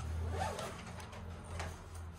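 Handling noise: a sharp click, then a short rasp and a few light clicks, over a low steady hum.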